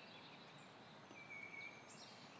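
Faint background hiss with a bird's single whistled note, held for about half a second a little past the middle.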